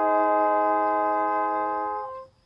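Flugelhorn holding one long, steady note.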